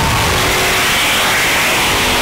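Supercharged Jeep Grand Cherokee Trackhawk V8 accelerating hard on a highway, a loud, rushing run.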